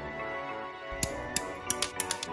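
Background music, with sharp, irregular plastic clicks starting about a second in as white plastic model-kit parts are snipped from the sprue with metal nippers.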